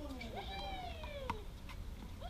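A person's drawn-out vocal exclamation, its pitch sliding up and then down over about a second, with a single sharp knock near its end.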